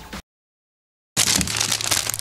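About a second of dead silence, then plastic packaging and cardboard crinkling and rustling as hands pull a small plastic-bagged part out of a shipping box.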